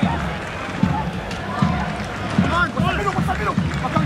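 Football stadium ambience: a steady murmur from a sparse crowd, with scattered voices calling and shouting, more of them near the end.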